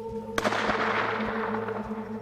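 A single hunting-rifle shot fired at an elephant, sharp and loud about half a second in, with a noisy tail dying away over about a second.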